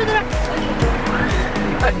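Background music with a steady beat, about two bass thumps a second.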